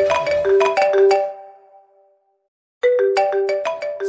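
Mobile phone ringtone: a marimba-like melody of short plucked notes, ringing for an incoming call. It fades out after about a second and a half, breaks off into silence, and starts again near the end.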